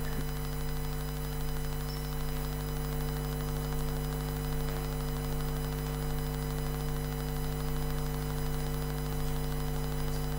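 Steady electrical mains hum, several fixed low tones with a faint slow pulsing in its low end, over a light hiss.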